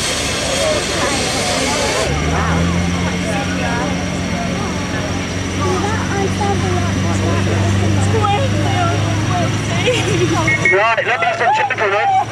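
A steady engine drone that starts suddenly about two seconds in and eases off near the end, under crowd chatter and nearby voices.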